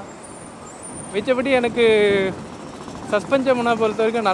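A man talking, with a pause in the first second, over steady wind and road noise from a moving scooter.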